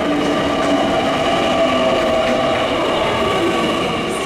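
JR Kyushu 885-series electric express train pulling slowly into a station platform, with a steady whine of several held tones over the running noise.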